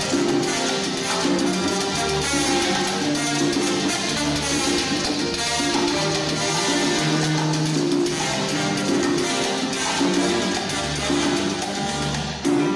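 Live salsa band playing with piano, bass, bongo and cowbell, timbales, congas and a trombone section, with no singing heard. The music is steady, with a walking bass line and held horn and piano chords.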